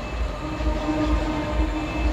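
A low rumble with a steady pitched tone, like a distant horn, held from about half a second in.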